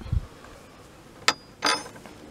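Hands handling carob seeds and the split pod on a wooden table: a low bump just after the start, then a single sharp click a little past halfway and a short scrape soon after.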